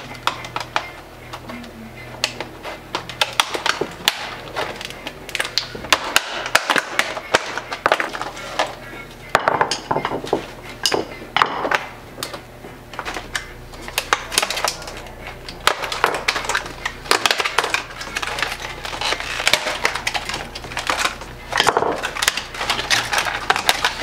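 Rigid plastic clamshell packaging being pried and torn apart by hand: a long run of irregular crackles, snaps and crinkles. Quiet background music plays under it.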